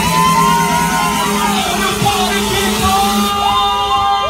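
Loud electronic dance music from a live DJ set, with crowd voices singing and yelling along. The treble drops out about three seconds in.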